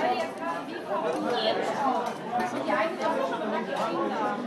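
Several people talking over one another: a steady, lively chatter of voices with no single speaker standing out.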